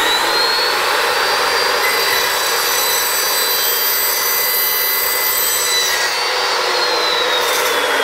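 Evolution S355MCS 14-inch metal-cutting chop saw running at full speed with its carbide-tipped thin-steel blade, cutting through a thin-walled (about 1 mm) round steel tube; the cut adds a ringing whine from about two to six seconds in. About six seconds in the motor is switched off, and the whine falls steadily in pitch as the blade spins down.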